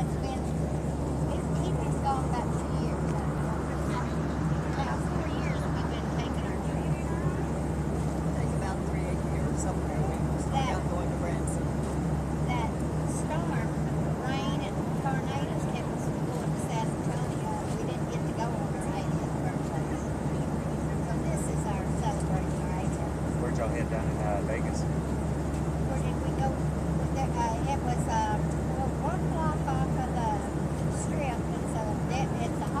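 Airliner cabin noise: a steady low drone with no change in level, under indistinct, muffled voices of nearby passengers.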